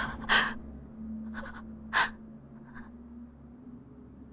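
A person's sharp, breathy gasps, four in about three seconds, the first and third the loudest, over a low steady hum that fades out near the end.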